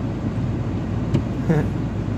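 Steady low hum of a Mazda car running, heard from inside its cabin, with a single light click about a second in.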